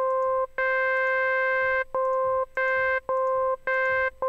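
Native Instruments Massive software synth playing a run of about six notes, all on the same pitch. Duller notes alternate with brighter ones, the brighter ones including one held for about a second. This is the low-pass filter opening and closing with the key pressed, as filter key tracking sets the cutoff.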